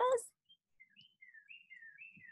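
A small bird singing faintly: a quick run of short whistled chirps, several sliding down in pitch, starting about half a second in and going on through the pause.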